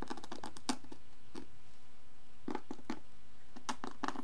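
Short scratches and taps of a small hand tool scraping and pressing compost soil blocks together in a plastic seed tray, in little clusters near the start, in the middle and near the end.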